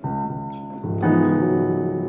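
Piano-voice chords played on a digital keyboard. One chord is struck at the start, then a fuller, louder chord about a second in is held. It is the move to the six-minor chord, C-sharp minor in the key of E.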